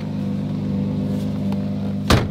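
Lamborghini Murciélago V12 engine idling with a steady low hum.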